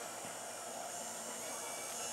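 Small electric motor of an Allen Bradley 855BM rotating warning beacon running steadily, a faint even whir as it spins the beacon's turntable.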